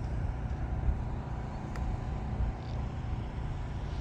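Faint, steady whine of an E-flite Carbon-Z Yak 54's electric motor and propeller flying far overhead, under a louder, uneven low rumble of wind on the microphone.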